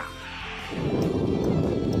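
Wind buffeting the microphone of a camera on a moving bicycle: a loud, uneven low rumble that starts about two-thirds of a second in, over background music.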